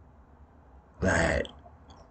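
A man's short throaty vocal sound, about half a second long, about a second in, between stretches of near quiet.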